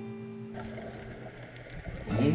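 A guitar chord strummed just before rings on and fades away. About half a second in, a low rumbling noise comes in under it.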